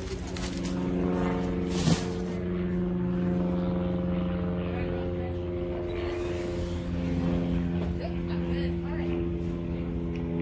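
A steady motor drone that holds one pitch throughout, like an engine idling, with a single short knock about two seconds in.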